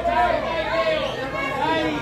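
People talking, several voices chattering.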